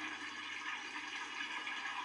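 A dishwasher running, with a low, steady rush of spraying water.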